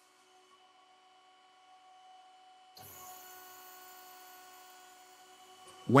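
Faint steady hum made of several held tones, stepping up in level about three seconds in, when a hiss joins it.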